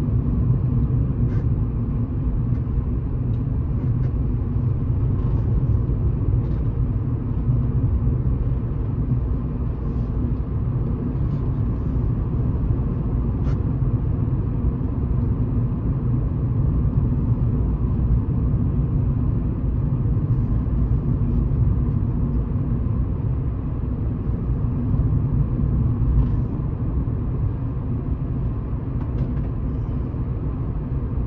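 Steady low rumble of a car driving along an open road, heard from inside the cabin: engine and road noise at an even speed.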